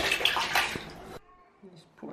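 Water splashing and sloshing in a plastic wash basin as a wet kitten is bathed, stopping abruptly a little over a second in.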